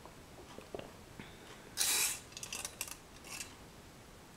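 A short slurp of tea sipped from a cup about halfway through, followed by a few small clicks and crackles.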